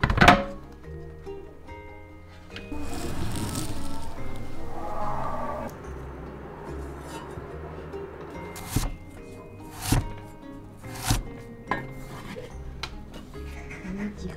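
Background music, with a loud clank of a metal baking tray set down on a wire cooling rack at the start, a scraping rustle a few seconds in, and three sharp knocks later.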